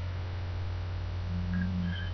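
Steady low electrical mains hum in the recording, with a faint short hummed tone near the end.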